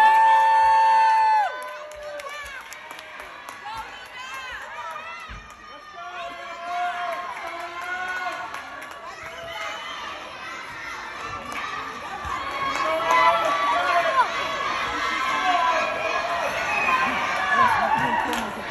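Gymnastics-meet crowd with children's voices shouting and cheering. A loud, held cheer opens it and stops after about a second and a half. The crowd then drops to a lower murmur and grows louder again in the second half.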